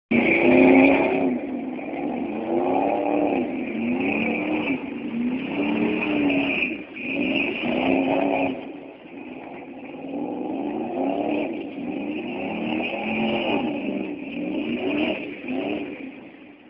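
Pickup truck's engine revving up and down over and over as it spins its rear wheels through doughnuts, the pitch rising and falling about once every second or so. Loudest at the start, fading for a while in the middle as the truck swings away, then coming back.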